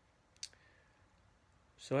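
A quiet pause in a man's talk, broken by a single short click about half a second in; his voice starts again near the end.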